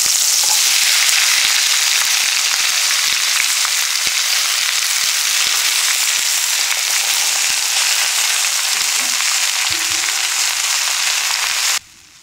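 Sliced cucumber and carrot frying in hot oil in a carbon steel wok: a steady sizzle that starts as the vegetables are tipped in, and cuts off suddenly near the end.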